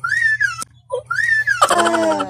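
A young girl squealing twice with excitement as she opens a gift bag. The two squeals are very high-pitched and each rises and falls, about half a second apiece.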